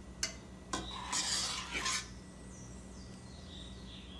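A metal spoon knocking twice against a stainless steel bowl, then scraping round it for about a second while scooping up thick custard cream.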